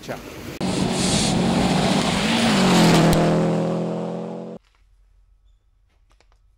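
A rally car's engine at high revs as it passes at speed, its note dropping as it goes by, over a loud rushing hiss. It starts suddenly and cuts off abruptly after about four seconds.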